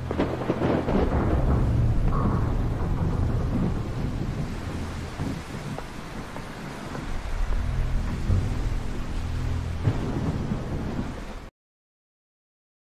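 Storm sound: rolling thunder over steady rain, in two long swells, one at the start and one near the end, that cut off abruptly just before the end.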